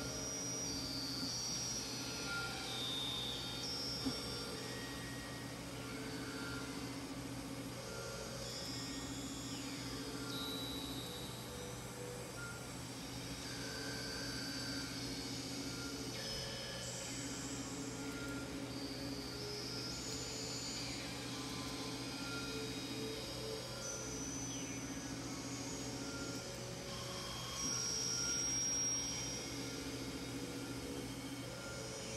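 Electronic synthesizer tones played from a keyboard: a steady low drone under a mid-pitched held note that repeats in blocks of about two seconds, with scattered high electronic tones coming and going above. A single click sounds about four seconds in, and the sound swells briefly near the end.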